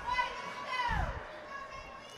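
Faint, high-pitched voices of spectators calling out in an ice rink, one call held for about a second and then falling in pitch.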